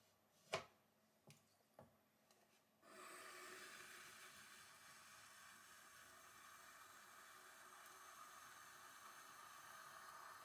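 Faint, steady wet rubbing of fingers pressing into a spinning ring of wet stoneware clay on a potter's wheel, starting about three seconds in. Before that come a few light clicks, one louder than the rest.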